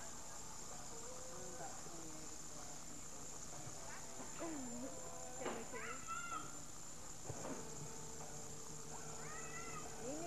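Small children's voices: a few short babbling calls and squeals without clear words, mostly in the middle and near the end, over a steady background hiss.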